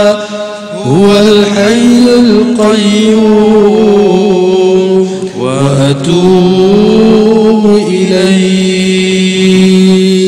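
Islamic zikir chanted as long, drawn-out melodic phrases, each note held and sliding in pitch; a new phrase begins about a second in and another about halfway through.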